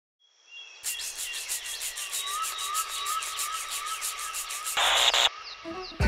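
Electronic sound-effect intro to a track: a fast, even pulsing noise with a repeating rising whistle, then a short loud burst of hiss. Bass and guitar music begins just before the end.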